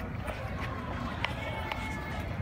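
Hurried footsteps and the rubbing and handling noise of a handheld phone carried at a fast walk through an outdoor crowd, with a sharp click about a second in and people's voices in the background.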